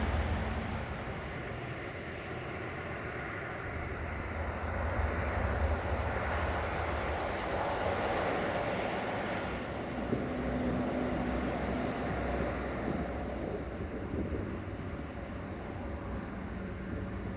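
Wind buffeting the microphone over a steady low rumble, with no train passing.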